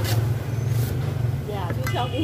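A steady low engine drone, with two brief rasping bursts in the first second as fibrous coconut husk is torn apart by hand.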